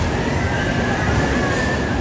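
Small roller-coaster car rolling along its steel track: a steady rumble with a faint, high, drawn-out wheel squeal.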